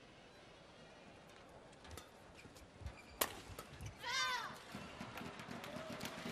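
Hushed badminton-hall room tone between rallies, with a few soft low thumps and one sharp crack about three seconds in. A voice then briefly calls the score, "eighteen".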